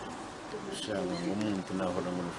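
A man's voice talking, the words unclear.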